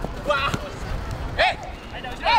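Footballers shouting short calls to each other on an outdoor pitch, two calls about a second apart, with a couple of dull thuds of the ball being kicked early in the play.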